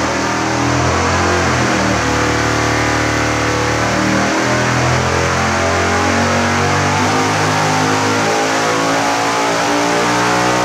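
8-71-supercharged 555 big-block Chevy V8 on nitrous, running a full-throttle dyno pull, its pitch climbing steadily as revs sweep up from about 5,000 toward 7,000 rpm.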